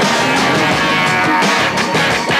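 Guitar-driven rock song playing steadily, in a cassette tape recording made off the radio.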